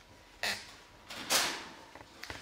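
A metal baking sheet sliding out on the oven rack: two short scraping sounds, the second louder and longer.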